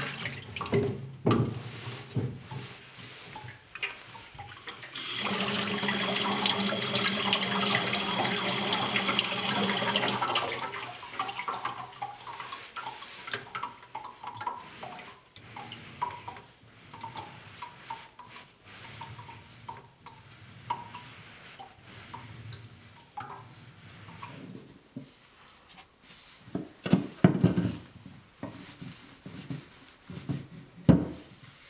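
Water from a tap running into a sink for about five seconds, with a steady hiss. Around it, a steel blade is rubbed back and forth on a wet sharpening stone in short, irregular scraping strokes, loudest in a cluster near the end.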